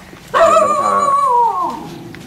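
A dog giving one long, high whine or howl that holds steady for about a second, then falls in pitch and fades.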